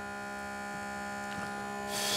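EVAP smoke machine running with a steady hum while it feeds smoke into the car's EVAP system through the service port. A short hiss comes near the end.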